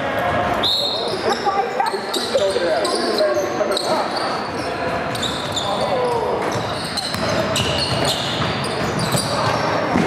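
A basketball bouncing on a hardwood gym floor as it is dribbled, amid players' indistinct shouts and calls.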